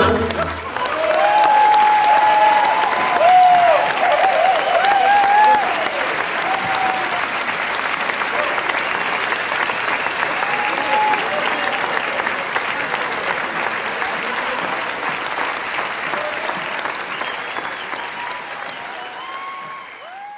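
Audience applauding, with voices calling out in cheers during the first few seconds; the applause slowly dies down toward the end.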